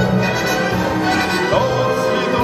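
Recorded orchestral waltz accompaniment playing as an instrumental passage, with no voice singing over it.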